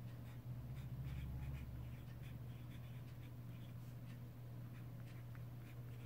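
A pen nib scratching across paper in many short strokes as words are handwritten, over a steady low hum.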